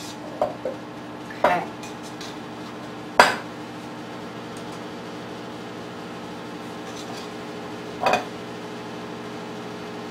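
A spoon stirring a thick rice and vegetable filling in a glass mixing bowl, knocking against the glass a few times, the loudest knock about three seconds in, with soft scraping between.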